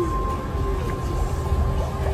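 Steady low rumble of a ride boat moving along the water, with faint background music with a few held notes playing from the boat's speaker.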